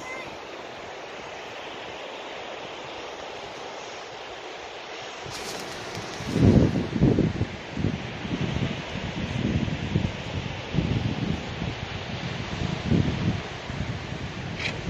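Ocean surf breaking with a steady wash of noise; from about six seconds in, wind buffets the microphone in irregular gusts that are louder than the surf.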